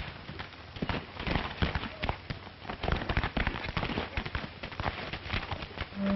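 A rapid, irregular clatter of knocks and thuds that thickens about a second in and keeps on, uneven in loudness.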